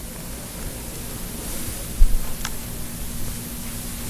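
Steady hiss and low hum of a recording or sound-system line, with one short low thump about halfway through and a faint click soon after.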